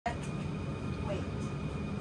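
A steady low rumble, like machinery running, with a faint voice in the background.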